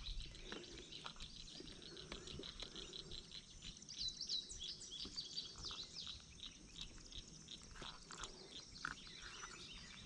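Faint birdsong: many quick, high chirps repeating throughout, busiest about four seconds in, over a quiet outdoor background.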